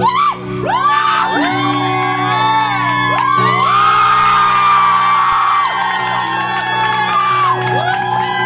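An acoustic guitar is strummed, its chords changing every second or two, while a crowd cheers and whoops over it, many voices rising and falling at once.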